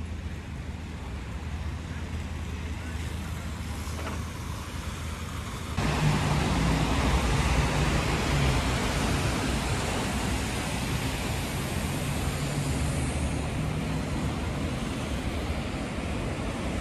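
City street traffic on a wet road: cars and a bus passing with tyre hiss and a low engine hum. The sound jumps suddenly louder about six seconds in.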